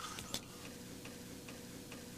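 A single sharp click about a third of a second in, then faint, even ticking about two and a half times a second over a faint steady hum.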